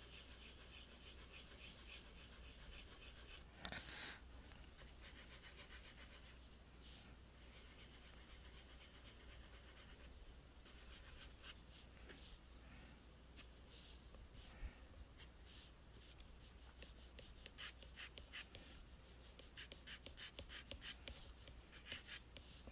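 Pencil sketching on paper: faint scratching strokes, becoming many short, quick strokes in the second half, with one louder rub about four seconds in.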